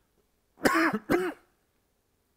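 A man coughs twice in quick succession, clearing his throat, about half a second in.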